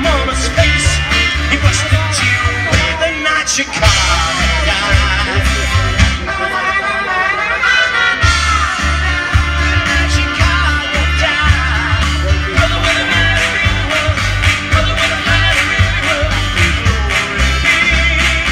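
Live rock band playing a song with a steady beat, recorded from among the audience.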